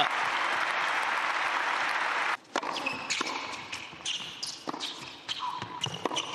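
Crowd applauding, cut off abruptly a little over two seconds in. Then, on an indoor hard court, a tennis ball being bounced and struck: scattered sharp knocks over quieter arena noise.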